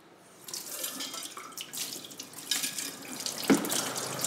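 Kitchen tap running into a stainless steel sink, with irregular splashing, starting about half a second in. A single sharp knock near the end.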